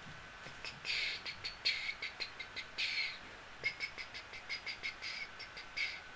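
Dry-erase marker squeaking on a whiteboard. A few longer strokes come in the first three seconds, then a run of quick short ticks, about three or four a second, as small marks are drawn on the graph's axis.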